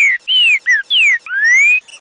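Green-winged saltator (trinca-ferro) singing one phrase of five loud, clear whistled notes: four short falling slurs, then a long rising note to close. This is the rare song type known as "Joaquim já foi do Mineirinho".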